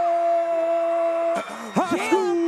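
A long note held at one steady pitch, cutting off about one and a half seconds in, followed near the end by several quick upward swoops that settle back onto the same held note.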